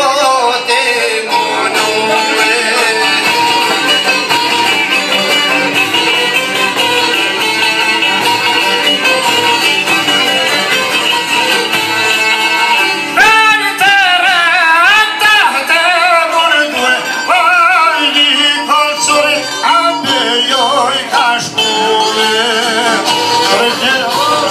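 Live Albanian folk music: long-necked lutes and a violin accompanying a man singing into a microphone. A strongly wavering, ornamented melody line comes in about halfway through.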